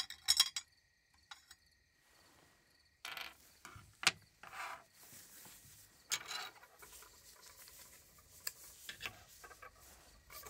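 Small plastic parts of a toy eye model clicking and clinking as they are handled and fitted together by gloved hands, with soft rubbing between the clicks. The loudest cluster of clicks comes just after the start, with a single sharp click about four seconds in and more clicking around six seconds.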